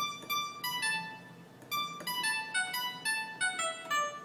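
A plucked-sounding synthesizer patch played on a keyboard in two quick descending melodic runs in Mohana raga. The second run is longer and falls lower than the first.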